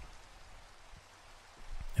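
Soft, steady rain ambience: an even, faint hiss of falling rain.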